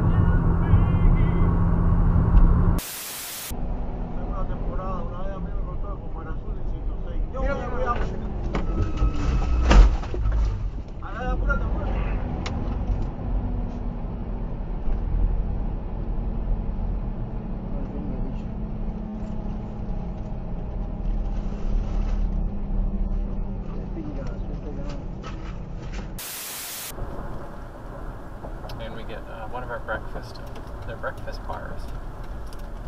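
Dashcam audio of vehicles on the road: steady low engine and road rumble, with a single sharp bang about ten seconds in and voices around it. Two brief bursts of hiss, near the start and near the end, mark cuts between clips.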